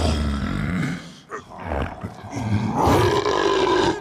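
Orc roaring in a film fight: a low growl in the first second, then a long, loud roar from under three seconds in until the end.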